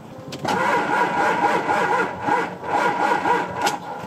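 Starter motor slowly cranking a diesel truck engine for about three seconds, a steady whine over a slow, repeating pulse, and the engine does not catch. The batteries are down to about 9 volts, and even with the jump starter on there is not enough power to crank it over properly.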